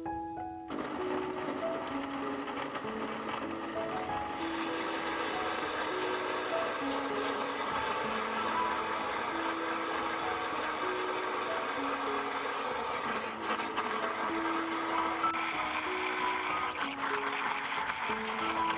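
Electric countertop blender running, puréeing chunks of melon with milk into a smooth liquid. It starts about a second in and gets louder and higher-pitched about four seconds in. A tune of held notes plays over it throughout.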